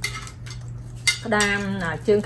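Crab leg shells being cut with kitchen scissors and cracked by hand, with sharp clicks at the start and about a second in.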